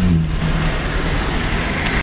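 Car driving along a road, heard from inside the cabin: steady engine and road noise, with a low engine hum that fades about halfway through.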